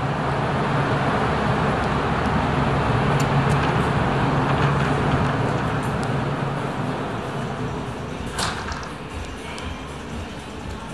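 Steady street traffic noise with a low hum, fading as the store doors are passed, with one sharp click about eight and a half seconds in.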